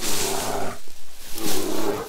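A bear growling: two rough, breathy growls, each lasting under a second, about half a second apart.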